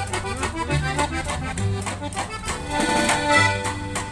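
Norteño band playing an instrumental break between verses of a corrido: accordion leading the melody over rhythmic guitar strumming and plucked upright bass notes.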